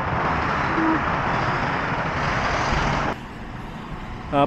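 Steady road traffic noise from a busy multi-lane road, heard from an overpass above it; it cuts off suddenly about three seconds in.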